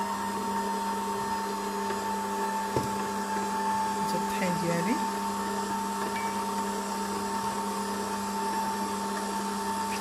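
Electric stand mixer running steadily on low speed, its motor giving an even whine as the dough hook turns through runny brioche dough, with a few faint taps.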